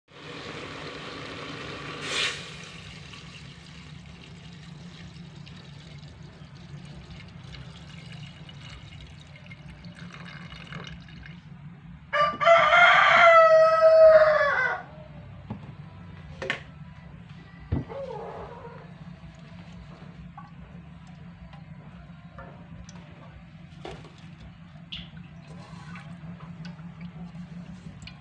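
A rooster crowing once, about two and a half seconds long and falling in pitch at the end, near the middle. Under it runs a low steady hum, with a few sharp clicks.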